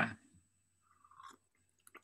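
The last syllable of a spoken sentence, then near silence, broken by a faint short rustle about a second in and a few faint soft clicks near the end.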